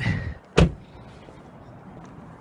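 A car door being shut: a short knock and rustle at the start, then one sharp slam about half a second in.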